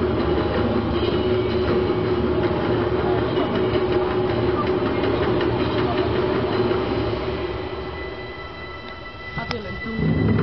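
Steady sports-hall ambience: a continuous hum with faint murmuring chatter. It grows quieter near the end, and a single sharp knock sounds just before the end, as the athlete goes into a leap.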